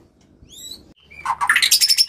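White-rumped shama (murai batu) calling: a few short, high chirps, then a quick flurry of notes rising in pitch in the second half.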